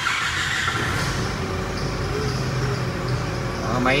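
Nissan diesel engine of a 2015 Veam 6.5-tonne truck just started, settling into a steady idle.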